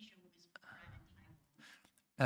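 Near silence in a pause between spoken sentences, with only a faint tick and a soft low murmur about half a second in.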